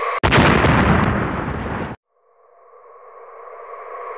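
Firework sound effect: a sudden bang about a quarter second in, followed by dense crackling that cuts off abruptly just before two seconds. A steady synth pad then fades back in.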